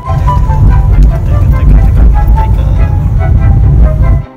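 Loud, steady low rumble of a car on the move, heard from inside the cabin, with background music playing over it.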